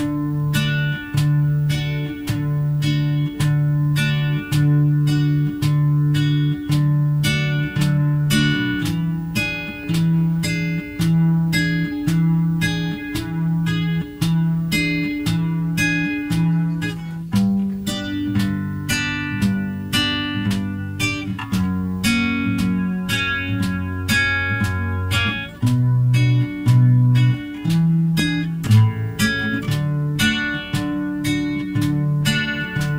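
Nylon-string classical guitar strummed in a steady, even rhythm of about two strums a second. It runs once through a simple verse progression: C, D7, F, E, Am, D7, G7, back to C.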